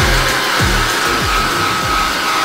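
Hand-held hair dryer running: a steady rush of air with a high whine from its motor, blowing over damp goalkeeper gloves to dry the latex palms. Background music with sliding bass notes plays underneath.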